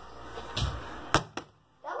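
A plastic water bottle, thrown in a bottle flip, hitting a countertop: a dull thump about half a second in, then two sharp knocks about a quarter second apart as it bounces and fails to land upright.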